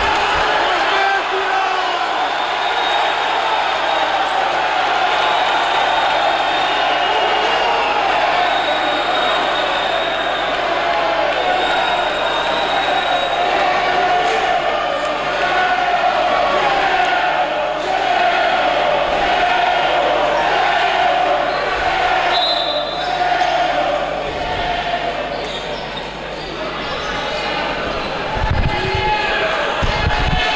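Basketball bouncing on a hardwood gym floor, with a few low thuds near the end. Underneath runs the continuous chatter and shouting of spectators and players, echoing in the sports hall.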